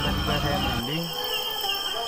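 Crickets chirping steadily in a high, evenly pulsing trill.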